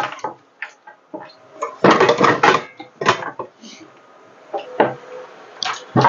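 Kitchenware being handled at a counter: a string of irregular clattering knocks and clinks, densest about two seconds in, with a few single knocks later.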